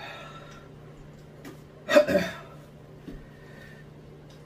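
A man breathing hard with one loud, short vocal outburst about two seconds in, a reaction to the burn of an extremely hot sauce in his mouth.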